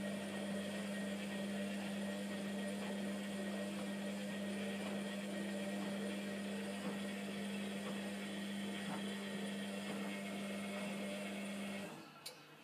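Hotpoint Aquarius WMF720 washing machine running its wash stage, the motor turning the drum with a steady hum that stops abruptly near the end, as the drum pauses between tumbles.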